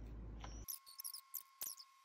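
Faint scratches, thin clicks and a few short high squeaks of a small paintbrush working red paint onto a wooden fish cutout. A little over half a second in, the background hiss drops out abruptly and a faint steady high tone runs underneath.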